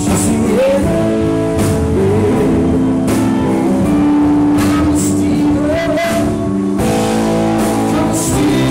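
A live rock band playing at full volume: two electric guitars over a drum kit and keyboards, with notes that bend up and down.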